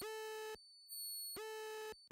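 A repeating electronic beep: two buzzy tones of about half a second each, about a second and a half apart, each opening with a quick downward swoop in pitch. A faint high whine sounds in the gaps.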